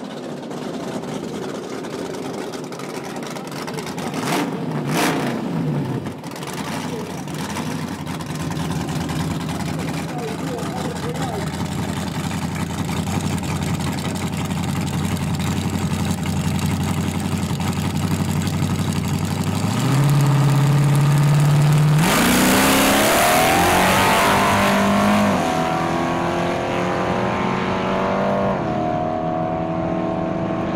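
Drag-racing car engines idling on the start line, with a vehicle passing on a falling note about five seconds in. Near the end the revs are held steady and higher for about two seconds, then the cars launch at full throttle: a loud burst with the engine note climbing, dropping back at each gear change about three and six seconds later.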